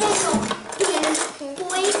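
Small children's voices chattering and squealing, over a run of quick clinks and clatter of crockery and cutlery at a kitchen table.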